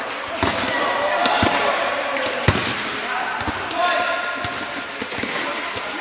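Futsal ball being kicked and bouncing on a hard indoor court: a series of sharp thuds about a second apart, the loudest about two and a half seconds in, echoing in a large hall.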